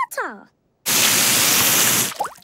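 A short falling voice-like note, then, about a second in, a loud, steady rush of water lasting about a second: a cartoon gush or spray of water dousing a character. It cuts off suddenly.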